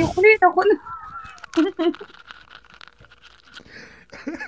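People laughing hard, with a high, wavering squeal of laughter lasting about a second, a second into the laughing.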